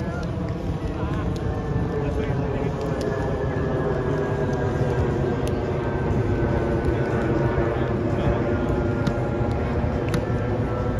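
A propeller aircraft's engine drone passing overhead, steady with a slowly falling pitch, over a low rumble.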